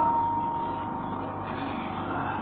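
A pause in a man's speech: steady hiss and background noise of the recording, with his last words trailing off in the first half second.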